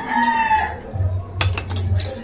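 A rooster crowing: the tail of one long held call that ends under a second in. A few sharp clinks of cutlery on dishes follow near the end.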